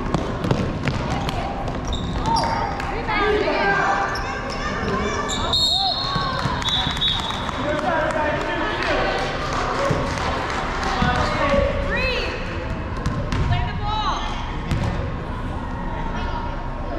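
A basketball dribbling and bouncing on a hardwood gym floor, with players' shoes squeaking and people calling out, echoing in a large hall.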